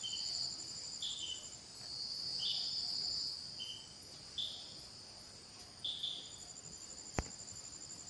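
Faint, steady high-pitched insect trilling, with short chirps about once a second and a single sharp click near the end.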